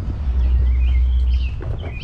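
Small birds chirping in short rising and falling notes, over a strong low rumble that swells about a quarter second in and eases after a second and a half.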